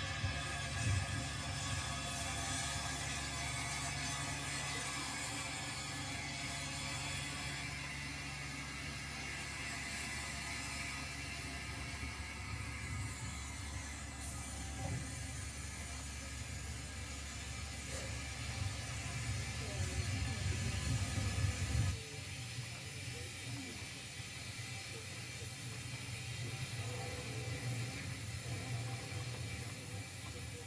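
0 gauge model train running on the layout: a steady motor hum with wheel and mechanism noise. The low hum drops away sharply about 22 seconds in, as the train stops.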